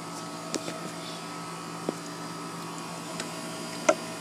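A steady low hum, like a running machine or electrical hum, with a few light clicks; the sharpest click comes near the end.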